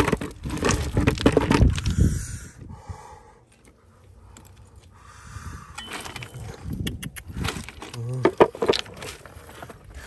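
Loose stones clicking, knocking and scraping against each other as broken rock and gravel are handled and shifted, in irregular bursts with a quieter stretch in the middle.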